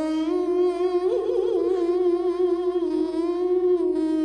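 A man's voice chanting a drawn-out melodic line, holding long notes that waver and turn in ornamented runs, without the breaks of ordinary speech.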